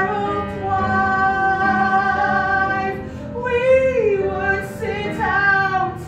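A woman singing a show-tune melody on stage, with long held notes that slide between pitches.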